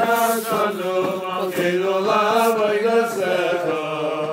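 Intro music of chanted singing: long held, wavering vocal notes over a steady low drone.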